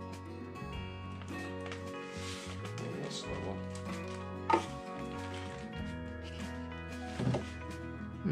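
Background music with steady held notes. About halfway through, a sharp knock as a small spirit level is set down on the pottery wheel head, then a couple of softer knocks near the end.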